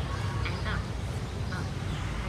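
Steady low outdoor background rumble, with a few brief pitched calls about half a second in.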